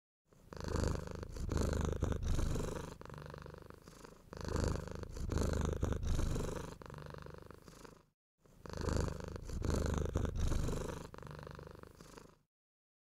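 A domestic cat purring close to the microphone. The purr swells and fades in a slow rhythm of about four seconds per cycle, and cuts out briefly about eight seconds in.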